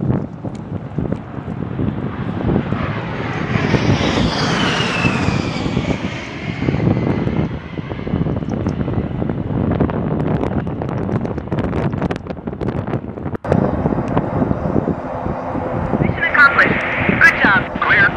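A large military transport helicopter's turbine engines and rotor running, with a whine that rises and then falls a few seconds in, and a rough, chopping noise through the middle.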